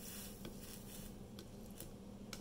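Faint sizzle and crackle of flux and solder under a soldering iron running a bead along a copper-foiled glass seam, with a few small ticks over a steady low hum.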